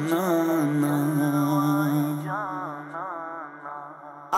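A man's voice singing an unaccompanied devotional Urdu naat (kalam): an ornamented, wavering melodic line over a steady low drone, fading out over the second half.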